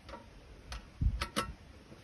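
Hand-tool work on a log: a few sharp, separate clicks and a dull knock about a second in.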